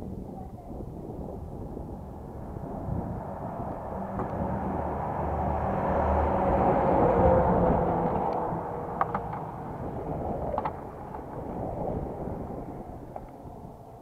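A road vehicle passing by. Its engine and tyre noise builds up to a peak about halfway through, then fades away, with a few sharp clicks near the end.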